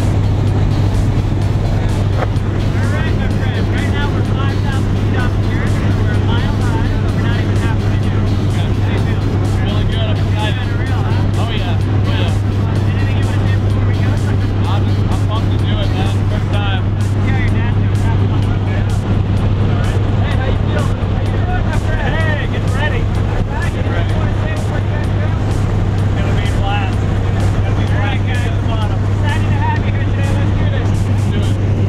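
Steady, loud drone of a jump plane's propeller engine heard from inside the cabin during the climb to altitude.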